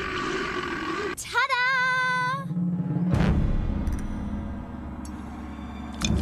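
Cartoon soundtrack: a held cry, then a second drawn-out cry with a wavering pitch, over background music.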